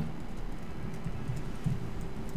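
Faint tapping of a laptop keyboard being typed on, over a steady room hum.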